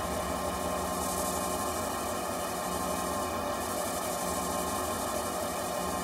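Electronic music at the close of a drum and bass track: a steady, sustained synthesizer pad with no drums, the beat having dropped out.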